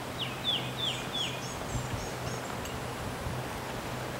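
A bird calling: four quick descending notes in about a second, then a fainter, higher run of short notes. A low steady hum continues underneath.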